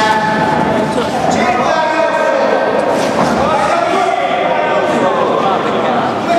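Several people's voices at once, calling out from ringside of a kickboxing bout in a large hall, with no clear words.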